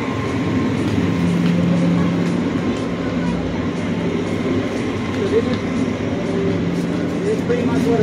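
Steady street traffic noise from passing vehicles, with a low engine hum in the first few seconds.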